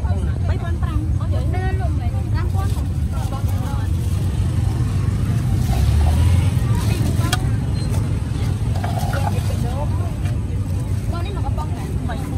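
Busy street-market ambience: people talking in the background over a steady low rumble, with a few light clicks.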